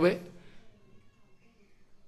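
A man's spoken word ends. In the pause that follows comes a faint, thin, high wavering animal call lasting about a second.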